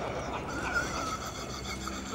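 A roomful of men laughing together at a joke, a dense mass of chuckles.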